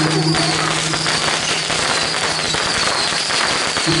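A long string of firecrackers going off in a rapid, continuous stream of pops. A low held tone sounds on and off over the crackle.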